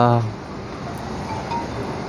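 A man's brief hesitant "eh", then a pause filled with steady background noise and a couple of faint short high tones.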